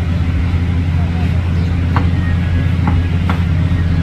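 Street traffic, with a steady low motor-vehicle engine hum that does not change, and faint voices in the background.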